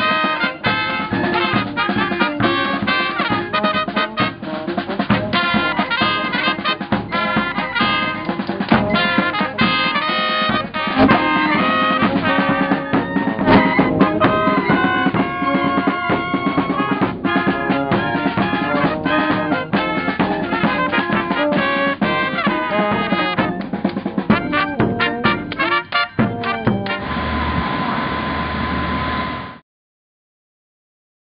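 A live brass street band plays an upbeat tune: trumpets, tuba and clarinet over bass drum and snare. About 27 seconds in, the band cuts out, and a steady single tone over a hiss follows for a couple of seconds before all sound stops.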